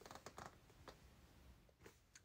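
Near silence with a few faint clicks and light taps as the assembled slatted sofa frame is handled and moved.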